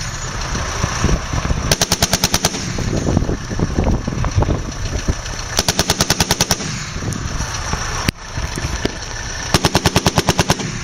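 Browning M2HB .50-calibre heavy machine gun firing short bursts of roughly eight to ten rounds each, evenly spaced. One burst comes about two seconds in, one about six seconds in, and another starts just before the end.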